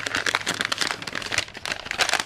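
Brown packing paper crinkling as it is unwrapped by hand, a dense, continuous run of crackles.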